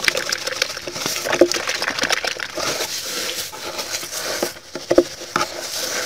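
A steel-wire dish scrubber being squeezed and worked by hand in a small plastic tub of soapy water: irregular wet crackling and sloshing as the wire and suds are pressed and stirred.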